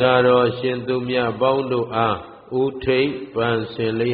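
A Buddhist monk chanting Pali verses in a steady, held tone, phrase after phrase, with a short pause about two seconds in.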